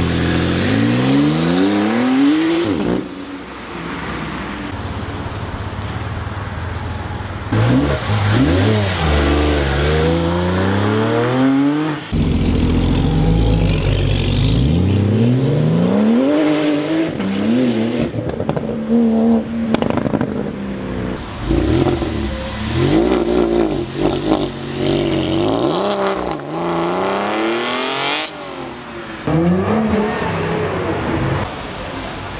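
Several sports cars accelerating hard away one after another, each engine note climbing in pitch through a gear, dropping at the shift and climbing again. The clips are joined by abrupt cuts.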